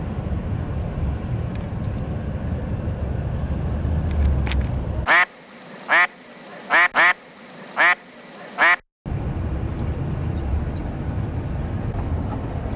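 Steady low rumble of road and engine noise inside a moving coach. About five seconds in it cuts out for a dubbed-in duck quacking, six quacks over about three and a half seconds. Then the coach noise returns.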